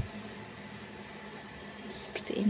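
Faint steady low hum over quiet room hiss, with a brief soft rustle of stretchy black legging fabric being handled near the end.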